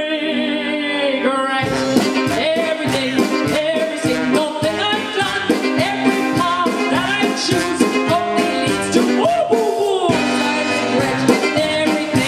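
A woman singing into a microphone with a live band. She holds one long note, then about a second and a half in the band comes in with a quick, steady beat under her singing, and near the end she holds another long note.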